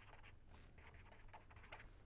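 Faint scratching of a pen writing on paper: many short strokes in quick succession, over a low steady hum.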